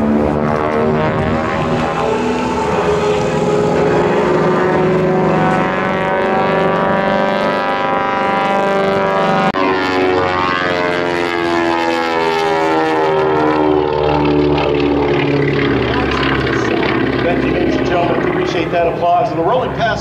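Twin radial piston engines and propellers of a vintage twin-engine airplane droning overhead during an aerobatic smoke display, the pitch sliding up and down as the plane moves through its manoeuvres.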